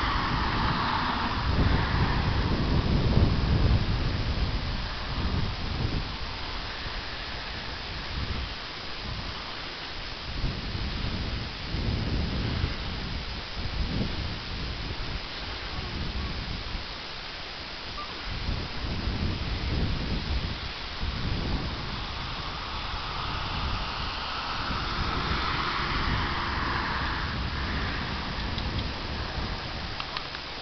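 Wind buffeting the camera microphone: a gusty low rumble that rises and falls every second or two over a steady hiss, strongest in the first few seconds.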